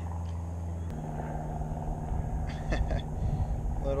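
A motorboat engine drones steadily and low. About a second in there is a click, and the drone turns abruptly into a rougher rumble. A short laugh comes near the end.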